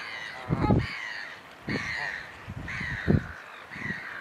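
A bird calling over and over: about five short, harsh calls roughly a second apart, with low thumps in between.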